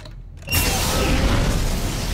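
Movie sound effect of an armoured suit's arm-mounted flamethrower: a loud blast of flame starts suddenly about half a second in and keeps going.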